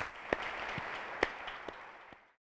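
Audience applauding, with a few sharp single claps standing out, slowly fading.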